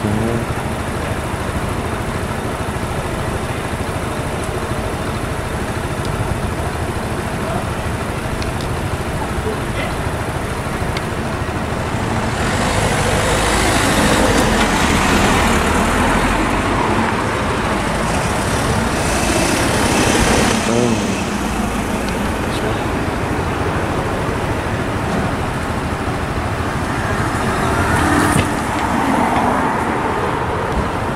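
A train passing over a level crossing, its rush of wheel and engine noise building about twelve seconds in and dying away some nine seconds later, over steady road traffic noise.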